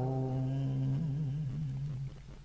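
A man's chanting voice holding one long, low hummed note at the end of a line of Vietnamese chanted verse (ngâm), steady at first and wavering a little in pitch in its second half.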